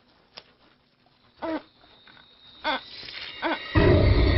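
A woman's short muffled moans, three of them about a second apart, after a faint click. Just before the end, a loud horror-film music sting cuts in.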